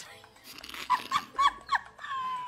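A person's quiet, short, high-pitched vocal squeaks, four or five in quick succession in the second half.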